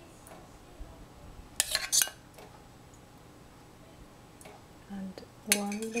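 A metal spoon clinking against kitchenware in a small cluster of sharp knocks about a second and a half to two seconds in.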